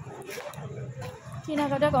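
Low background noise, then a woman starts speaking about a second and a half in.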